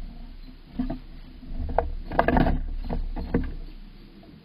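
Gray squirrel's claws scraping and knocking on the wooden nest box as it clambers about, with several sharp scrapes and a dense cluster just past the middle over a low rumble. The sounds fade near the end as it leaves the box.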